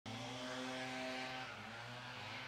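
Steady mechanical hum of a running motor, a few even tones held over a constant background noise.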